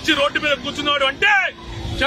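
A man speaking Telugu in a raised, forceful voice, then a pause filled by a low rumble near the end.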